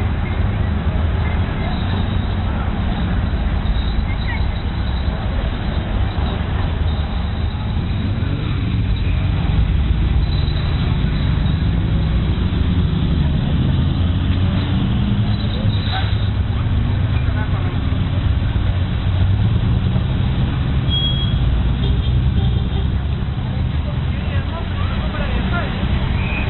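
Engines of a line of classic and sports cars driving slowly past one after another, running at low revs, with a steady low engine sound whose pitch rises and falls as the cars come and go.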